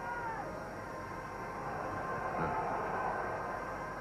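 Steady football stadium crowd noise on an old match-film soundtrack, with a few faint shouts rising out of it near the start and again about halfway through.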